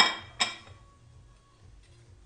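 Ceramic plates clinking together twice, about half a second apart, the first louder, each with a brief ring.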